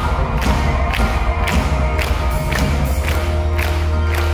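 Live pop band playing an instrumental stretch of the song, with a heavy bass and a steady drum beat of about two hits a second, and the crowd cheering over it.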